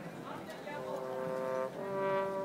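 Marching band brass section sounding a long held chord that starts about half a second in and breaks off near the end, followed at once by a second held chord. Crowd chatter runs underneath.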